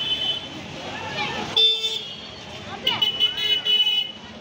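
Vehicle horns honking over the voices of a crowd in the street: one honk fading just after the start, a short one about one and a half seconds in, and a longer one from about three seconds in to the end.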